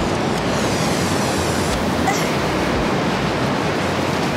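Ocean surf rushing steadily: an even wash of noise with no distinct strokes.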